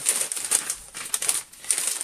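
Plastic poly mailer crinkling and rustling in irregular bursts as a T-shirt is stuffed into it by hand, with a brief lull about one and a half seconds in.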